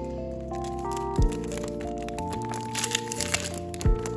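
Background music of held synth notes with deep bass hits, and the crinkle of a cellophane-wrapped stationery packet being handled about three seconds in.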